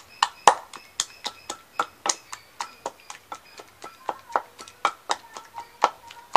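Wooden pestle pounding spice paste in a wooden mortar: rapid, uneven knocks, about three or four a second, with short ringing tones between the strokes.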